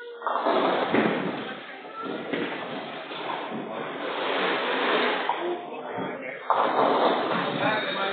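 Nine-pin bowling balls rolling down the lanes and knocking down pins, with a sudden loud clatter about six and a half seconds in, under voices in the hall.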